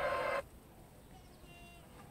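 Television sound of a boxing broadcast, crowd noise and commentary, cutting off abruptly less than half a second in as the set changes channel; then low room sound with a brief faint high trill.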